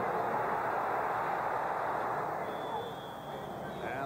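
Football stadium crowd noise, a loud steady roar of many voices that eases off in the last second. A thin, high, steady whistle note sounds from about two and a half seconds in, as the play is blown dead.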